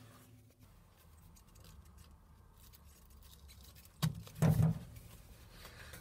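Mostly faint room tone, then about four seconds in a sharp click followed by a short knock: something being handled.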